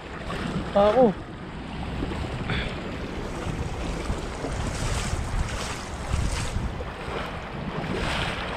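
Feet kicking and wading through a shallow, fast-flowing river, splashing and churning the water, over running water and wind buffeting the microphone. The splashing grows louder about five seconds in and eases off a second and a half later.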